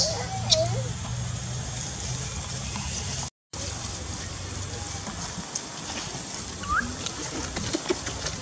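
Outdoor background of a steady low hum and faint voices, with a few short monkey calls at the start and a brief rising chirp near the end. The sound drops out completely for a moment about three seconds in.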